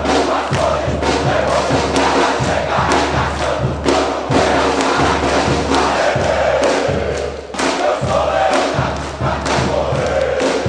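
Football supporters' group chanting together over a drum section (bateria) beating a steady rhythm. The loudness dips briefly about seven and a half seconds in.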